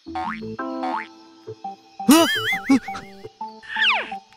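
Light, playful background music with cartoon comedy sound effects: a loud wobbling, warbling boing about two seconds in, and a quick falling glide near the end.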